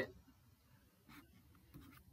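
Near silence, with the faint scratch of a stylus drawing a line on a pen tablet, briefly audible about a second in.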